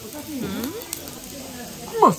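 Lamb and vegetables sizzling on a domed cast-iron Jingisukan grill pan, with a short wavering voice-like sound about half a second in.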